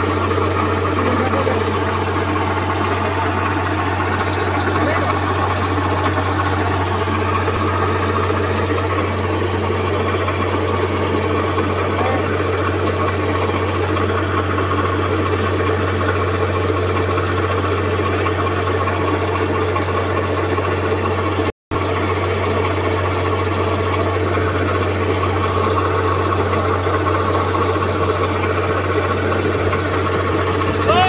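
The four-cylinder turbocharged diesel engine of a Kubota DC-68G-HK combine harvester running steadily while its unloading auger discharges grain, a constant low drone. The sound cuts out for a split second about two-thirds of the way through.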